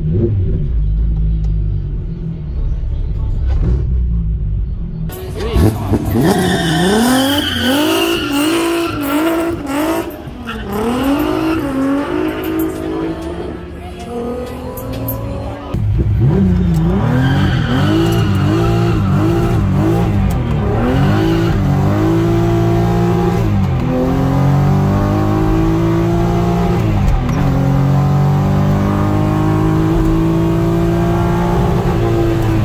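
Mk1 Jetta's 3.6-litre VR6 engine, heard from inside the cabin, idling with a low rumble, then launching at full throttle about five seconds in. It revs up through the gears, pitch rising and dropping at each shift, with heavy wheelspin. After an abrupt change about sixteen seconds in it pulls hard through the gears again.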